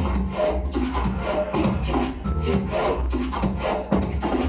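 Electronic bass music from a live DJ set played loud over a sound system: a constant deep sub-bass under a gritty, rasping wobble bass that pulses in a quick rhythm.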